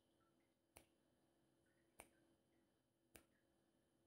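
Three faint, sharp ticks, evenly spaced a little over a second apart, over near silence: a countdown timer's tick sound effect running out the answer time.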